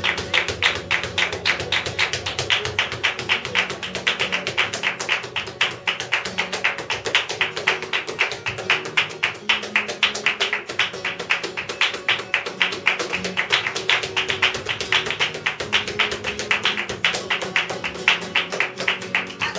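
Flamenco performance: rapid, continuous percussive strikes of a dancer's heel-and-toe footwork (zapateado) and hand-claps (palmas), over a flamenco guitar playing underneath.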